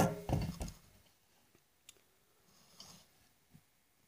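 Camera being picked up and repositioned by hand: bumps and rubbing on the body in the first second, then a few faint clicks as it is set down and settled.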